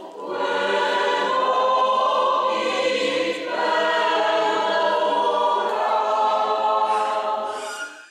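Parish choir singing a slow sacred song in sustained, many-voiced chords. There is a brief break between phrases at the start and a new phrase about three and a half seconds in, and the singing dies away at the very end.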